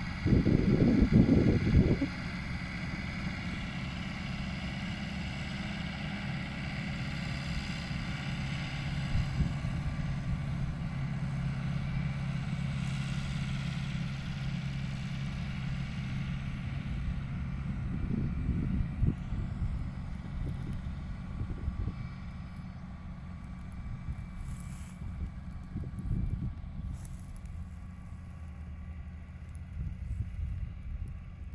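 Challenger tractor's diesel engine running steadily as it pulls a trailed field sprayer, its hum weakening as the tractor moves away in the last third. Wind buffets the microphone in the first two seconds and again about two-thirds of the way through.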